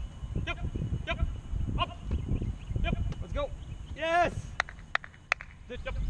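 Short, untranscribed shouted calls from people on a training field come about every half second, with a longer, louder shout about four seconds in. A few sharp knocks follow, with wind rumbling on the microphone throughout.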